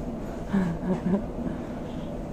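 Steady low rumble inside a moving Dutch Sprinter stopping-train carriage, with a quiet voice briefly heard about half a second in.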